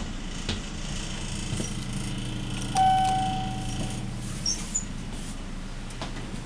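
A single elevator chime about three seconds in, a clear tone that starts sharply and fades over about a second, over a steady low hum.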